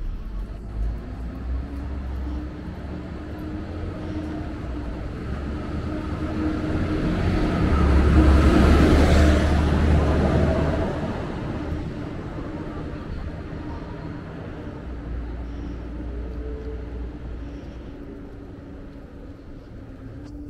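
Road traffic beside the pavement: a car passes close by, its tyre and engine noise swelling to a peak about eight to ten seconds in and then fading, over a steady low rumble of traffic.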